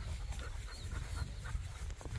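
A dog panting faintly in short, quick breaths over a steady low rumble.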